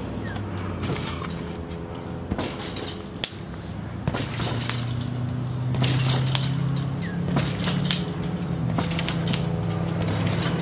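A trampoline being bounced on: irregular knocks and creaks from the springs and mat as the jumper lands. Underneath runs a steady low hum that shifts slightly in pitch.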